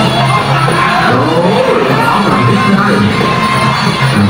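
Traditional Kun Khmer ringside music playing, a wavering melody that slides up and down over steady low notes, with crowd noise beneath.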